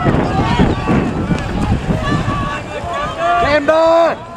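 Canoe polo players and spectators shouting and calling over one another, with wind buffeting the microphone; one loud, held shout comes just before the end.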